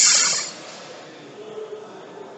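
A short, sharp hiss at the very start that fades within half a second, then faint handling noise from a snap gauge and micrometer being fitted together by hand.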